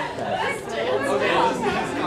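Indistinct chatter of several voices talking over one another in a large hall.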